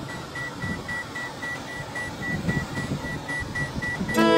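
A steady run of short, high electronic beeps, several a second, over a low rumble inside a car.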